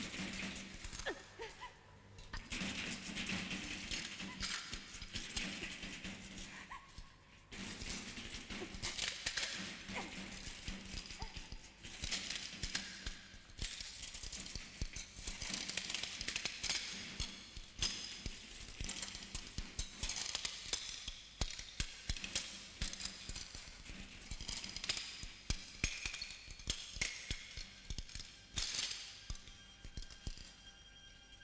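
Horror-film soundtrack: music with dense crackling and rattling noises throughout, dropping away briefly twice in the first few seconds.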